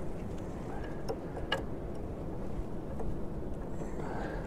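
A couple of faint sharp clicks of metal on metal as hands and tools work on a nut inside a steel sawmill frame, about a second and a second and a half in, over a steady low background noise.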